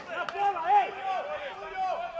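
Men's voices calling out, with no words the recogniser could make out, and a couple of sharp knocks near the start.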